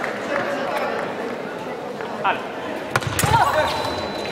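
Sabre fencers' footwork on the piste: scattered shoe scuffs and taps, then a sharp crack and heavy thumping steps about three seconds in as the two close in an attack, over the murmur of a sports hall.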